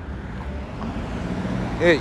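Low steady background rumble with a faint hum, and a man briefly saying "yeah" near the end.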